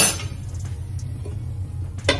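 A sharp metal clank as the iron roti tawa is picked up to cover the karahi, then a steady low rumble with a few faint clinks, and another clatter at the very end as the tawa comes down over the pan.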